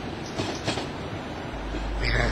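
Tram running along its rails, a steady rolling noise with a few sharp clicks from the wheels; a low hum comes in near the end.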